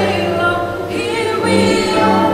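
A small mixed group of young men and women singing a song together in harmony through microphones, holding long notes.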